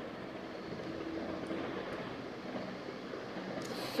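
Steady background hiss of room noise with no distinct event, and a short breath just before the end.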